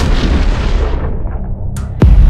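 An explosion dying away: the noise of the blast fades over about two seconds, leaving a low rumble. A short, sharp sound comes near the end.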